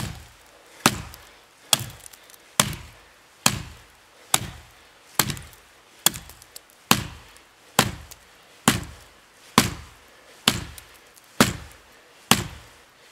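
Hatchet chopping into the trunk of a dead standing tree: about fourteen evenly paced blows, a little under one a second, each a sharp crack that dies away quickly.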